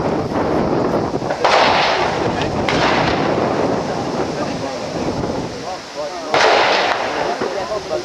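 Three rifle shots on an outdoor range, about a second and a half, just under three seconds and six and a half seconds in. Each is a sharp report that trails off briefly.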